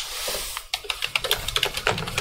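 Computer keyboard typing: a quick run of keystrokes, coming faster from about a second in, as a line of text is typed out.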